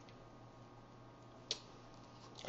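Quiet room tone with a faint steady low hum, broken by one short, sharp click about one and a half seconds in.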